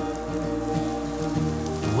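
Butter sizzling and crackling in a hot frying pan as diced onion is tipped in, under a background song.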